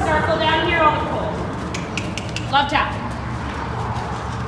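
Brief indistinct voice: a short falling phrase in the first second and another short sound about two and a half seconds in, over a steady low rumble.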